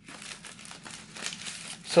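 Packing material crinkling and rustling in irregular crackles as a shipping box is unpacked by hand.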